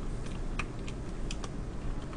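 A few separate keystrokes on a computer keyboard, unevenly spaced, as a new numbered line is typed.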